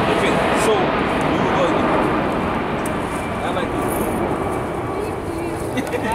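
Indistinct talking under a steady low rumble of background noise, with laughter breaking out at the very end.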